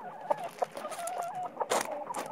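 Chickens clucking in short repeated calls while they go after a snake, with several sharp clicks among the calls and two louder ones near the end.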